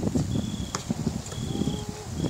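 Wind rumbling on the microphone at an outdoor basketball court, with a few sharp knocks of a basketball bouncing. A short high chirp repeats about once a second.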